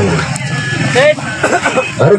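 Scattered shouts and chatter from people around an outdoor football pitch, with one clear rising call about a second in.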